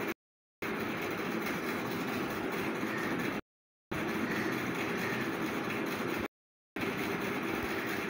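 Steady background noise with a faint low hum, cutting off abruptly into dead silence three times and resuming each time after about half a second.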